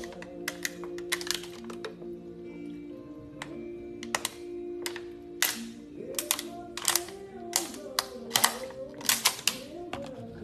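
Background music with held chords, over many irregular sharp crackles from a clear plastic water bottle buckling as it is chugged; the crackles come thicker in the second half.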